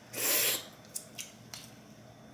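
Eating seafood by hand from a plastic boil bag: one short, noisy crunching or slurping burst about half a second long as a crab leg is bitten, then a few faint clicks of shell.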